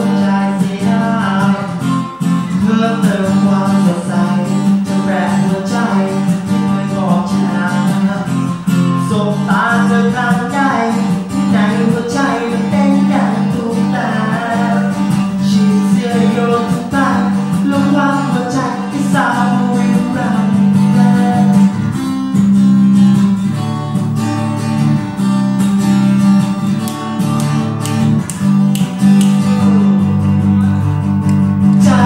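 Acoustic guitar strummed as accompaniment to a male singer performing a Thai luk thung / phleng phuea chiwit song live. In the last several seconds the voice drops out and the guitar plays on alone.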